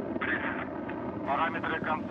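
Steady low roar of a Soyuz-2.1a rocket's kerosene-oxygen engines during ascent, heard through the launch broadcast with a man's voice over it.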